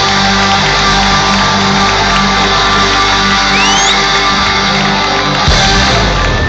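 Live rock band holding a sustained closing chord, loud, with the crowd shouting over it. A high rising call from the crowd comes about three and a half seconds in, and the chord breaks off with a final hit near the end.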